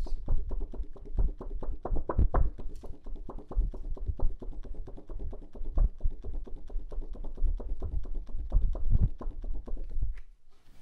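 A hand wiping an aluminium-foil lithography plate dry with a paper towel in fast back-and-forth strokes, the plate knocking lightly against the wooden table several times a second. This is the plate being dried before printing.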